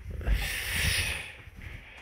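A person's breathy exhale, a hiss lasting about a second, close to the microphone.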